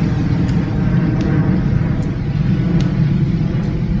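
Steady low rumble of open-air beach ambience, with faint light taps about every 0.8 seconds as swinging hands pat the body.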